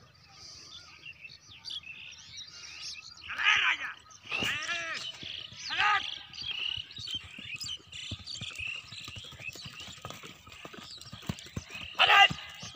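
Birds chirping throughout, with loud human calls and shouts around the middle. From about seven seconds in, a quick run of hoof thuds builds as a galloping horse approaches, loudest near the end.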